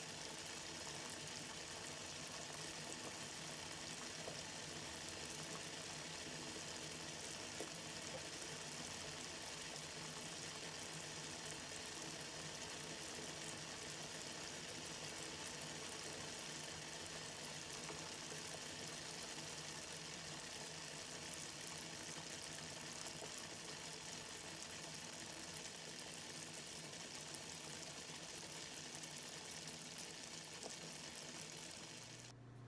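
A large metal pot of foamy liquid at a full rolling boil, bubbling steadily and evenly.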